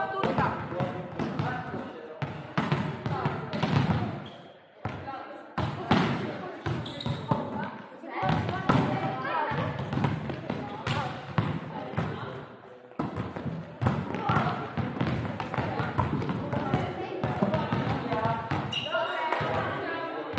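Volleyballs being struck by players' arms and hands and bouncing on a sports-hall floor: many irregular slaps and thuds from several courts at once, ringing in the large gym.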